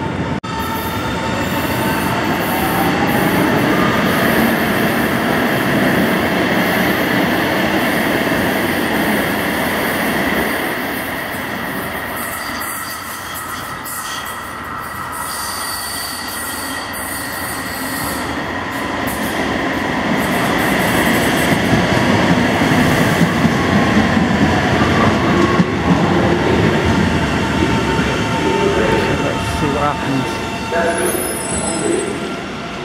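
Ottawa O-Train Confederation Line light-rail trains (Alstom Citadis Spirit) in the station. In the first seconds a train pulls out with a rising motor whine and wheel squeal. After a quieter spell in the middle, the next train draws into the platform and slows to a stop near the end.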